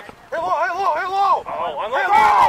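A person yelling in a high, wavering voice, a drawn-out shout lasting about a second, then more shouting near the end.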